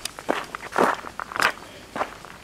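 Footsteps on a gravel track, about three crunching steps at an ordinary walking pace.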